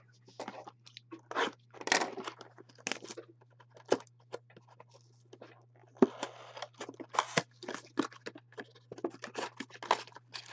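Plastic shrink wrap being torn off a cardboard trading-card blaster box and crinkled in the hands, then the box's cardboard flap pulled open: an irregular run of crackles and rustles.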